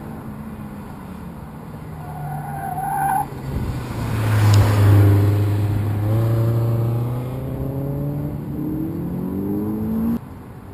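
A car running an autocross course: a short tyre squeal about two seconds in, the engine growing loud as the car passes closest around the middle, then the engine note climbing steadily as it accelerates away.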